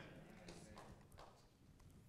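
Near silence in a hall, with a few faint footsteps as a man in hard-soled shoes walks across a stage.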